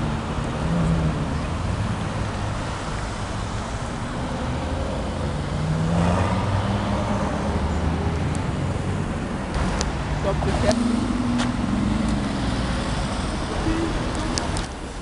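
City street traffic: car engines running and moving through an intersection, with a steady road rumble and a few sharp clicks in the second half.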